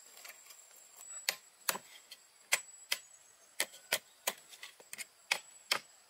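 Claw hammer striking nails in thin wooden poles: sharp, dry knocks at irregular intervals, about two a second, starting about a second in.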